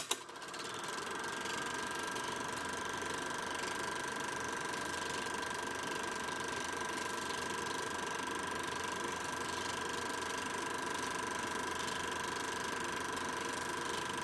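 Small-gauge 8mm film projector switched on with a click, coming up to speed over about a second and a half, then running steadily with a mechanical whir.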